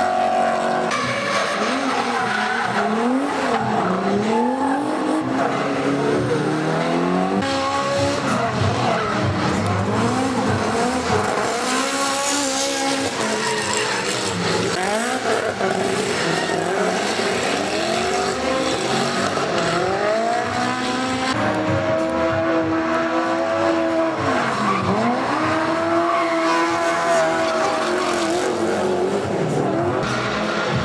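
Drift cars' engines revving hard, pitch swinging up and down again and again as they slide through the corners, over tyre squeal from the sliding rear wheels.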